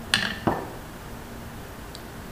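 Two sharp clicks, a third of a second apart, of a detached PCP air-rifle air tube knocking against the rifle and table as it is handled and set down.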